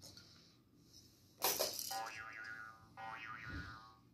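Electronic musical baby toy giving a sudden noisy sound effect about a second and a half in, then a tinny electronic jingle of quick up-and-down notes in two short phrases.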